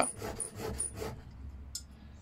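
Faint handling noise of a hand plane blade clamped in a honing guide as it is lifted off a diamond sharpening plate to check the burr, with one light click near the end.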